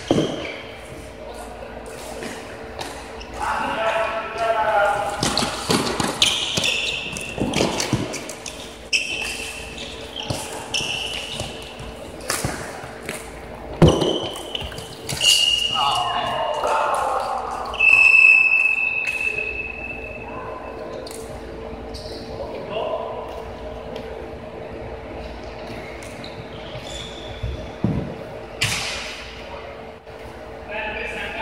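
Indoor floorball play in a large, echoing gym: scattered sharp clacks of sticks and the plastic ball, with players shouting. Two brief high squeaking tones come in the middle, during a scramble in front of the goal.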